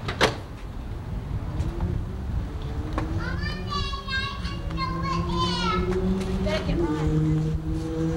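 Children's high-pitched squealing voices, rising and wavering for a few seconds in the middle, over a low steady drone. A single sharp knock comes just after the start.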